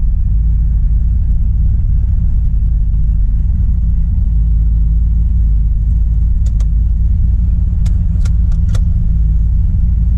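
Turbocharged Mazda RX-7's engine running steadily at low revs with no revving, a low rumble heard from inside the cabin. A few sharp clicks come in the second half.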